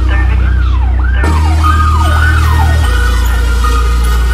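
Hard trap instrumental beat: a siren-like wail sweeping up and down about twice a second over a loud, sustained 808 bass that shifts pitch about a second in and again near three seconds. The high end is filtered out until about a second in, when the full beat comes back.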